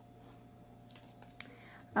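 Quiet room tone with a steady low hum, and a few faint small clicks in the second half from hands handling the yarn and wire.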